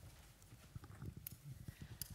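Near silence: faint room tone with a few soft, irregular knocks and taps, like handling noise while a handheld microphone is passed and picked up.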